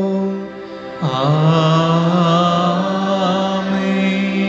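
A man's voice chanting a Mass prayer in long, steady held notes, with a short drop just before a new sustained note begins about a second in.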